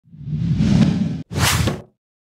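Two whoosh sound effects for an animated intro: a swelling whoosh with a heavy low end that cuts off suddenly after about a second, then a shorter, brighter whoosh that fades out.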